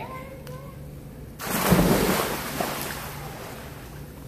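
A person jumping into a swimming pool: a big splash about a second and a half in, then water churning and settling.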